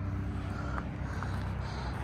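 Helicopter flying some way off, not yet in sight, heard as a steady low drone.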